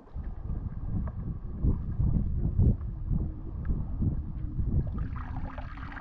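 Wind buffeting the camera microphone in a low, uneven rumble, with faint splashes and clicks of feet wading through shallow water over coral rock.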